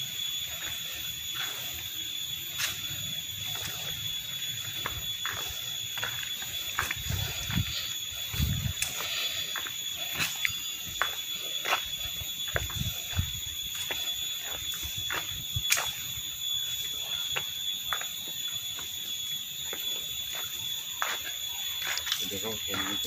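A steady, high-pitched whine runs through the outdoor background, with scattered light clicks and a few soft low thumps.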